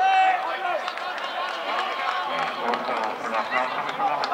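Several men's voices shouting and talking over one another as footballers and spectators celebrate a goal.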